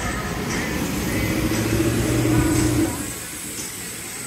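A motor vehicle's engine running close by over steady outdoor traffic noise. It grows louder for about two seconds, then eases off near the end.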